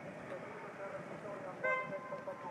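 A vehicle horn gives one short toot near the end, over people talking.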